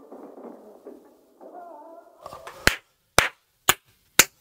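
Gunfire from a film soundtrack: faint, muffled movie sound, then four sharp shots about half a second apart in the second half.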